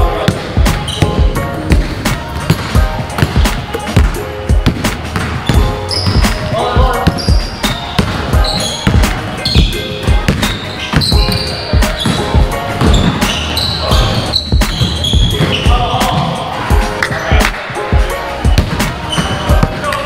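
Basketballs bouncing on a hardwood gym floor, irregular sharp thuds throughout, with players' voices in the hall.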